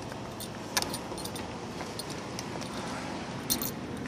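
A few light clicks and clinks over a steady background noise: one about a second in and a small cluster near the end.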